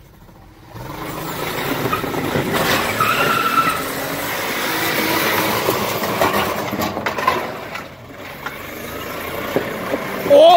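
Acura CL doing a burnout, its tires spinning and squealing on the asphalt under a hard-running engine. The sound builds about a second in, dips briefly near the end, then picks up again.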